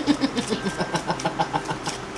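A person laughing: a quick run of short breathy 'ha' pulses, about eight a second, that tails off and fades out near the end.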